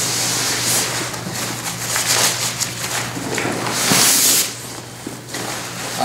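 Nylon pack fabric and a tent stuff sack rustling and scraping as the stuffed tent bag is worked up out of a backpack's drawstring collar, in several rustles, the loudest about four seconds in.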